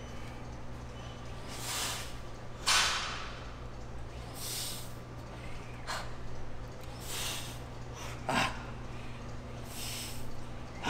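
A man breathing hard through a set of leg extensions: short forceful breaths about every second and a half, one for each rep. The sharpest exhales come about three seconds in and again near the end, over a steady low hum.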